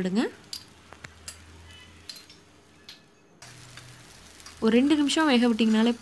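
Faint sizzling of a dosa crisping on a hot iron tawa, with a few small crackles. A woman's voice comes in loud near the end.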